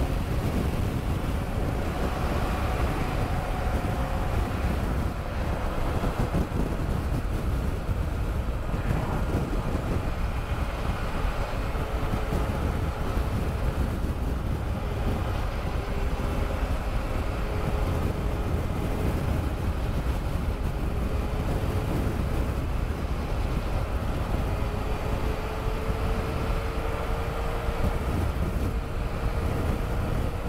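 Wind rushing over the camera microphone on a moving BMW F800 GSA motorcycle, with the bike's parallel-twin engine running underneath at cruising speed, its note drifting slightly as the throttle changes.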